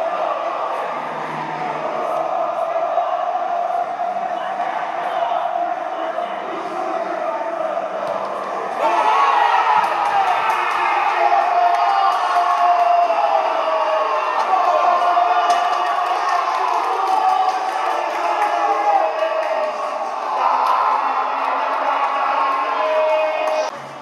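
Live match sound from a football pitch in an empty stadium: players and staff shouting and calling to each other, getting louder about nine seconds in, with occasional thuds.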